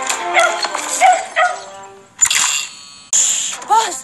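A cartoon dachshund barking and yipping excitedly over a film music score, with a sudden burst of noise a little after two seconds.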